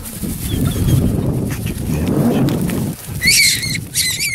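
A rabbit screaming, one loud high-pitched squeal about three seconds in, as the whippet catches it. Before that, a low rumbling noise on the microphone.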